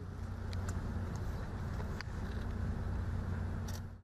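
Steady low outdoor background rumble with a few faint clicks scattered through it.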